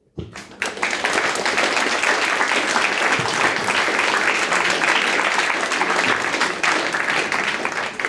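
Audience applauding: a dense round of clapping that starts abruptly just after the beginning and begins to die away near the end.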